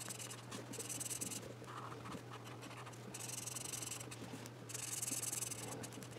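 Felt-tip marker scratching on the paper of a colouring booklet in repeated back-and-forth colouring strokes, coming in bursts of up to about a second with short pauses between.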